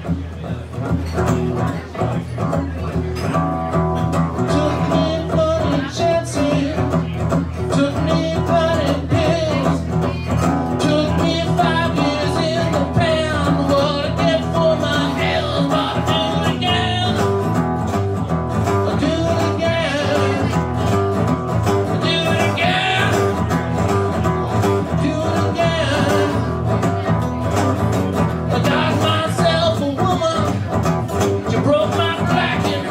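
A man singing to his own strummed acoustic guitar, a solo live song; the guitar plays from the start and the voice comes in about three seconds in.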